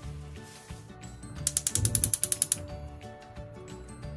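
A rapid train of sharp mechanical clicks, about a dozen a second, lasting a little over a second near the middle, over background music.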